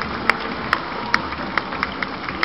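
Sharp, evenly spaced drum taps, a little over two a second, keeping marching time over a steady crowd hum.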